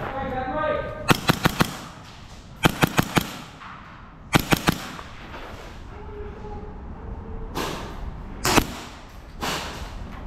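Gas blowback airsoft pistols firing quick strings of about four or five sharp shots each, three strings in the first five seconds and another shot or two near the end.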